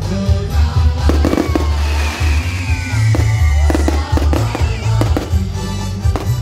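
Fireworks bursting and crackling in a rapid run of sharp bangs, over loud music with a heavy bass, with a long falling whistle from about two seconds in.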